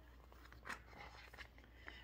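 Near silence in a quiet room, with the faint rustle of a picture book's paper page being turned, loudest a little under a second in.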